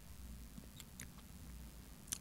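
Very quiet studio room tone: a faint low hum with a few faint, short clicks in the first half.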